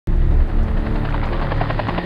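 Helicopter rotors beating fast and evenly over a low engine hum, starting abruptly, with music underneath.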